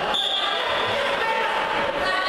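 Crowd chatter echoing in a sports hall, with one steady high whistle blast about a second long just after the start: the referee's whistle for the wrestling bout.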